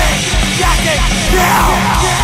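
Loud punk rock song with a shouted vocal over a fast, steady beat.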